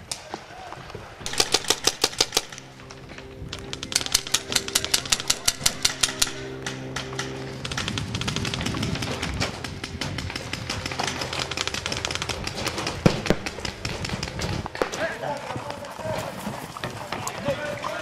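Paintball markers firing rapid volleys of about ten shots a second, two bursts in the first half. Dense firing and crackle continue later under background music.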